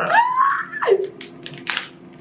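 A man and a woman laughing together, one voice sliding up and back down in a squealing glide in the first second, followed by short breathy bursts of laughter.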